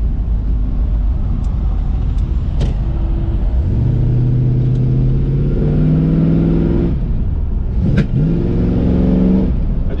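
A 1957 Chevrolet Bel Air's 350 V8 with headers and dual exhaust pulling at full throttle, heard from inside the cabin. The revs climb from about four seconds in, the automatic shifts up with a drop in pitch about seven seconds in, and a second later there is a sharp little pop from the carburetor before the revs climb again. The transmission does not kick down, which the driver thinks means the kick-down is not hooked up.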